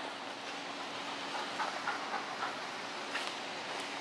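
Steady, faint room noise with a low hum, and a few soft, faint sounds as the dog moves and lies down on the rubber mats.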